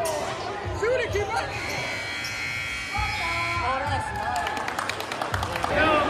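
Basketball bouncing on a hardwood gym court, with spectators shouting over it. A steady high tone holds for about a second midway, and a quick run of sharp clicks comes near the end.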